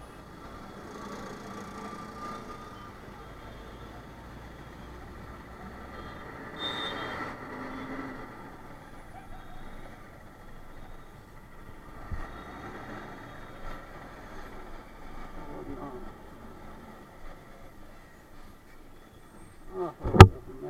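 Slow motorcycle ride through city traffic: steady engine and road noise with thin horn-like tones, a louder swell about seven seconds in, and a single knock about twelve seconds in.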